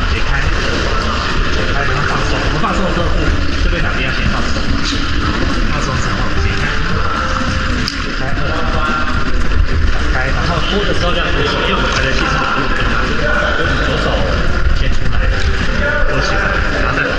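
A man's voice giving instructions over a steady low rumble, echoing in an indoor pool hall.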